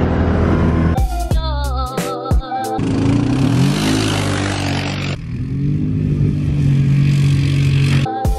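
Side-by-side UTV engine revving up about three seconds in, with the hiss of its tyres spinning and throwing snow on ice. It then runs steadily. Music with a beat plays briefly near the start.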